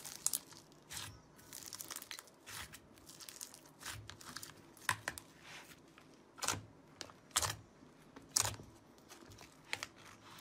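Slime being pressed, poked and stretched by hand in a plastic tub: soft sticky crackles broken by sharp pops, roughly one every second, the strongest in the second half.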